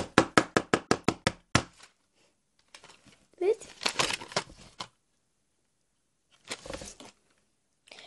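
A quick, even run of sharp clicking taps, about seven a second, for the first couple of seconds as a plastic-wrapped pack of pencils is handled. After that come brief plastic crinkling and a short hum of voice.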